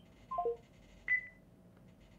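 Electronic call-software chime as a call-in caller disconnects: three quick descending tones, then a single higher ping about a second in that fades away.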